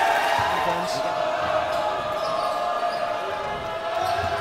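Basketball bouncing on a hardwood gym floor over a steady background of crowd noise and scattered voices in the gym.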